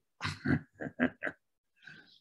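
A man laughing briefly over a video call: about five short, breathy "ha" pulses in quick succession that trail off after about a second and a half.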